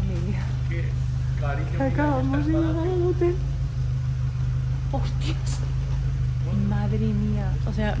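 A car engine idling close by, a steady low rumble, with voices talking briefly over it twice.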